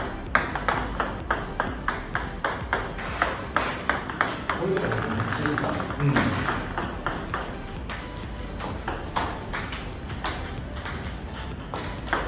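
Table tennis serves in quick succession: plastic balls clicking sharply off the paddle and bouncing on the table, about three clicks a second. A voice is heard briefly near the middle.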